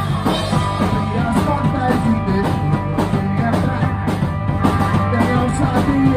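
A live rock band playing an instrumental passage: amplified electric guitars over a steady drum-kit beat.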